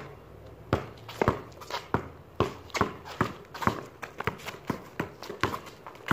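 Basketball dribbled on concrete, a quick, uneven run of bounces, two to three a second, mixed with sneakers scuffing the pavement.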